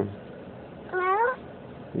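A toddler's brief high-pitched whimper about a second in, rising in pitch.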